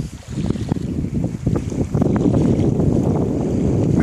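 Wind buffeting the phone's microphone: a low, gusty rumble that grows stronger about halfway through, with a few light handling knocks.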